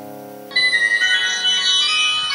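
A held keyboard chord fades out. About half a second in, a mobile phone ringtone starts abruptly: a bright, high, fast-tinkling electronic melody.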